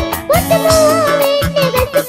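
A young girl singing a melody into a microphone with a live band, drums keeping a steady beat under her voice. A new sung phrase begins with an upward slide about a third of a second in.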